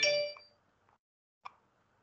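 A short electronic notification chime from a video-call app, ringing out and fading within about half a second, then a faint click about a second and a half in.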